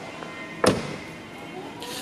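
A single sharp knock about two-thirds of a second in, over a low steady background.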